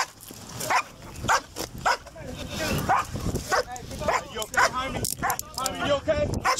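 A dog barking over and over in short, sharp barks, about two a second.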